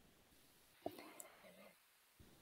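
Very faint muttered or whispered speech over a video call, starting just after a single sharp click a little under a second in; otherwise near silence.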